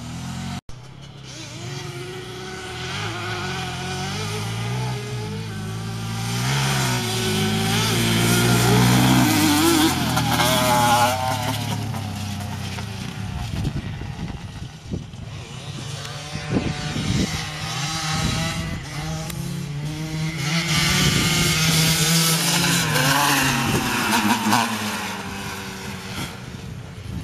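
Two sport quads racing: a Yamaha Banshee two-stroke twin on Toomey expansion pipes and a stock Bombardier DS650 four-stroke single, at full throttle. Their engine pitch climbs and drops again and again through the gears, louder toward the middle and again near the end.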